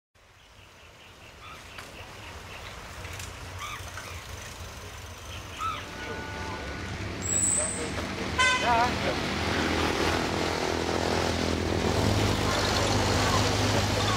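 Outdoor street ambience fading in and growing louder: a steady low engine hum, people's voices, and a short horn toot a little past the middle, followed by a brief wavering pitched sound.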